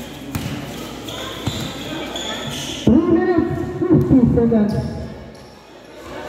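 Basketball bounced on a concrete court in a sharp, irregular run of bounces, then loud shouting voices from about three seconds in.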